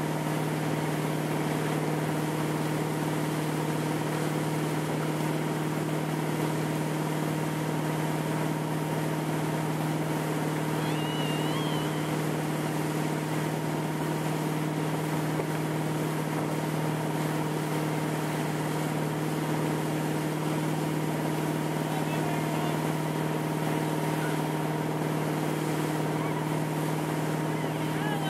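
A motorboat engine running at a steady cruising speed while towing riders, a constant low drone with no change in pitch, over a continuous rush of wake water.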